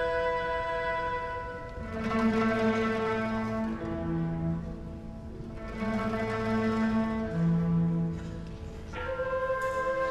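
Chinese traditional orchestra playing: a held high chord, then a slow phrase in the low register played twice, and the high chord comes back near the end.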